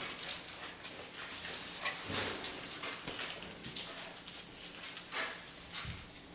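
A Norwegian Elkhound mother and her week-old puppies moving in a whelping box: scattered small dog sounds, faint puppy whimpers and the scuffle of paws on the floor.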